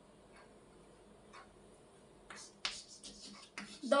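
Chalk writing on a blackboard: a run of sharp taps and short scratches starting a little past halfway, after a few faint ticks.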